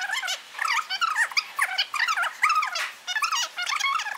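A woman's speech played back fast and pitched far up, a rapid squeaky chipmunk-like chatter with no low end: a fast-forward editing effect over the spoken introduction.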